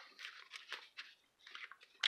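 Faint, scattered rustling and scraping of hands pressing contact-cement-soaked fiberglass cloth onto foam.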